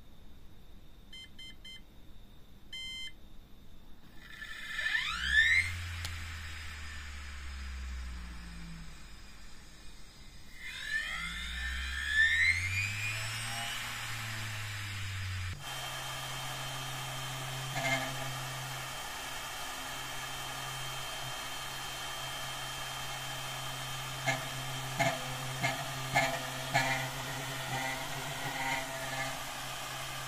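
Brushless ESC giving short arming beeps, then an old hard-drive spindle motor with a DVD on it spinning up twice with a rising whine. From about halfway on, the motor runs steadily on 12 V with a steady hum and a high whine, and a few clicks and knocks near the end.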